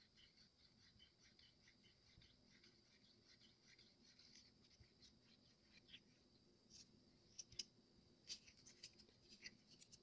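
Near silence, with faint scraping and small ticks of a silicone stir stick against the inside of a cup as resin is mixed with pink colorant; the ticks come more often in the second half.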